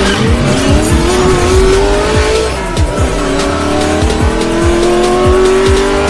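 Racing-car engine sound effect revving up over electronic music with a regular beat: the engine pitch climbs for about two and a half seconds, drops as if changing gear, then climbs again.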